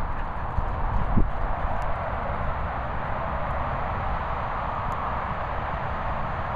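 Steady outdoor background noise with a low rumble on the microphone, and a couple of soft thuds in the first second or so.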